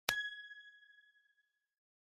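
A single bright, bell-like ding sound effect for an animated logo, struck once with a clear two-tone ring that fades out within about a second and a half.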